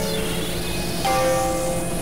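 Layered experimental electronic music: a new chord of held tones enters about a second in over a steady low drone and high hiss.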